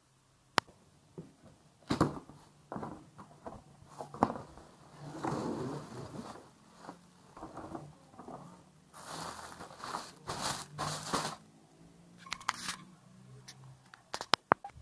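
An infant rocker being unboxed: plastic-wrapped parts rustling and crinkling as they are pulled from a cardboard box, with scattered sharp clicks and knocks of cardboard and parts being handled.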